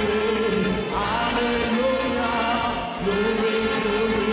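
Church orchestra of brass, woodwinds and keyboards playing gospel music, with voices singing along in held notes. A phrase ends about three seconds in and the next one starts straight after.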